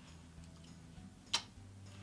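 Quiet room tone with a faint low hum, broken by one sharp click a little over a second in and a few much fainter ticks.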